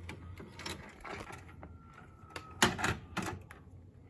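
Mechanical clicks from a VHS deck in a DVD/VCR combo player as it stops, with a faint whine partway through: about half a dozen sharp clicks, the loudest two a little after halfway.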